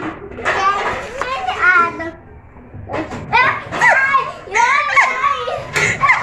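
Young children's voices: high-pitched, wordless chatter and vocalising in bursts, with a short lull about two seconds in.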